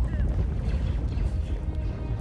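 A large wall of fire burning with a steady, dense low rumble.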